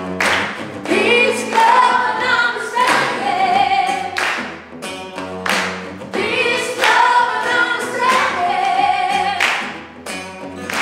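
Live acoustic music: a woman sings lead over two strummed acoustic guitars, with strong accents every second or so.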